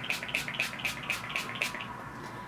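Mario Badescu facial spray misted from a pump bottle in rapid repeated hissing pumps, about seven a second, stopping just before the end.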